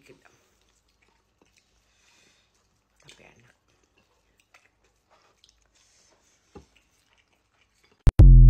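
Near silence with a few faint, short chewing and mouth sounds from eating grilled chicken by hand, scattered through the second half.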